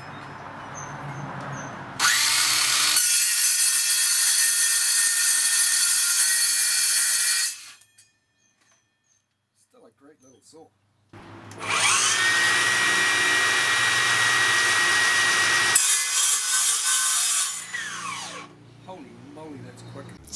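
Makita cordless metal-cutting circular saws with cold-cut blades cutting through a thin steel strip, in two cuts. The first cut runs about five seconds and stops suddenly. After a pause of about three seconds, a motor spins up and makes a second cut of about five seconds with a steady high whine. The whine then falls away as the blade spins down.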